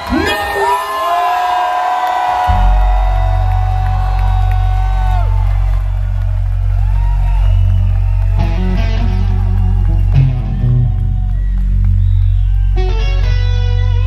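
Live electric guitar solo through Marshall amplifiers: long sustained notes bent up and down with vibrato, then quicker runs of notes, over a steady low drone that comes in about two seconds in.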